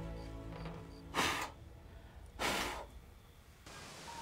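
Two short, breathy puffs of a woman's breath, a little over a second apart, as soft background music fades out.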